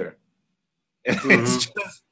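About a second of dead silence, then a man briefly clears his throat.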